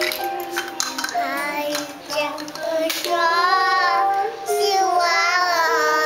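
A two-year-old girl singing the ending theme song of a Da Ai TV drama over instrumental backing music. Her voice comes in about a second in, then holds long, wavering notes over the steady accompaniment.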